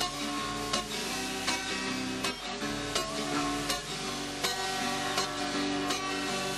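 Acoustic guitar strummed in a steady rhythm, chords ringing between strokes: the instrumental opening of a song before the voice comes in.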